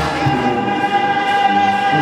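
Music with voices singing together, a choir sound: one long held high note, with lower sustained notes joining about a second and a half in.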